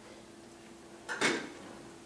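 A brief clatter about a second in, over a steady low hum.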